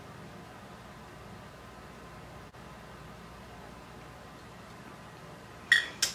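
Faint steady room tone with a light hiss. It drops out for an instant about halfway through, and a short sharp burst of noise comes near the end.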